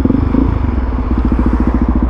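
Suzuki DR-Z400SM's single-cylinder four-stroke engine idling with an even, rapid pulse.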